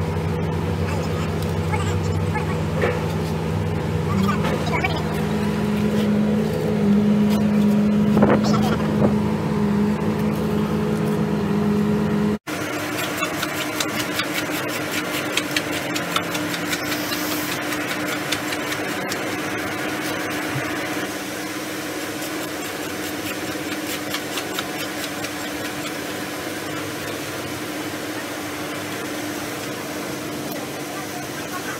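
Outdoor construction-site ambience: an engine running steadily with voices in the background. After an abrupt cut about twelve seconds in, a different, slightly quieter ambience follows, with a steady hum and many short clicks and scrapes.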